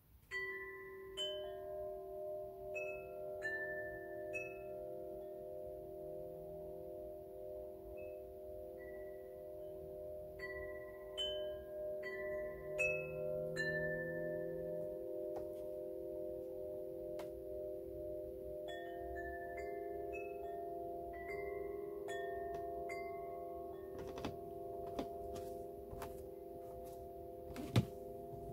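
Metal chimes ringing: clusters of short, high struck notes every few seconds over several long, lower notes that ring on throughout, with a few faint clicks near the end.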